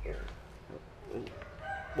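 A rooster crowing in the background, over a low hum that cuts off shortly after the start.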